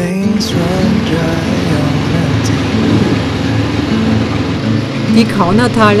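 Motorcycle engines running and pulling away, heard from the rider's seat. A man's narration begins near the end.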